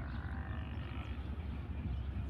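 Low, steady rumble of a distant diesel locomotive hauling a passenger express as it approaches round a curve.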